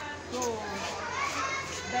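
Children's voices chattering and calling in the background, with a woman speaking a word or two over them.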